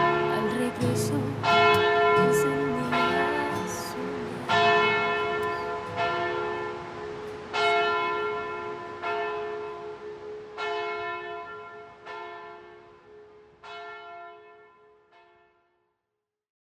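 A church bell tolling slowly, one stroke about every one and a half seconds, each stroke ringing on as the next one comes. The strokes grow fainter and die away near the end.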